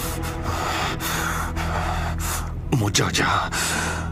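A person's heavy, gasping breaths over a low, sustained music drone, with a short falling vocal groan about three seconds in.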